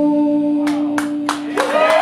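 A live band's final chord ringing out and then stopping at the end of the song. A few sharp claps come in about two-thirds of a second in, and the audience's whoops and cheers rise near the end.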